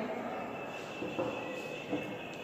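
Faint room tone with a thin, steady high-pitched whine that comes in about half a second in, and a couple of soft small knocks.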